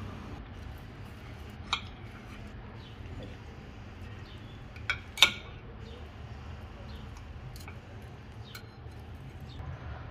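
Fork and knife clinking against a plate while eating: a few separate sharp clicks, the loudest about five seconds in, over a low steady background hum.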